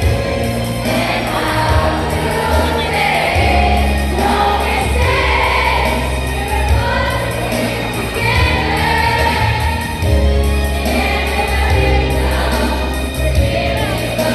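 A group of voices singing together over a backing track with steady heavy bass notes.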